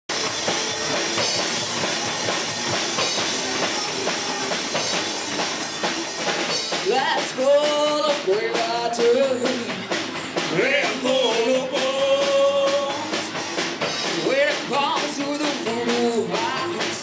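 Live rock band in a small bar playing loud drums and electric guitar, with a woman starting to sing into the microphone about seven seconds in.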